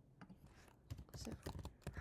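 Computer keyboard typing: a short run of faint key clicks, bunched mostly in the second half, as a word is typed.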